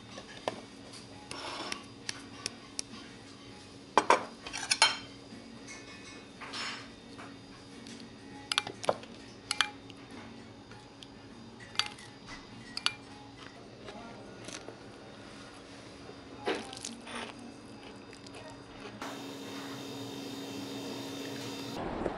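Metal spoon clinking and scraping against a ceramic soup bowl and plates while eating, in short, sharp, irregular clinks, some briefly ringing. Near the end the clinks stop.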